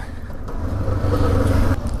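Kawasaki KLE 500's parallel-twin engine running at low revs while riding, a steady low rumble.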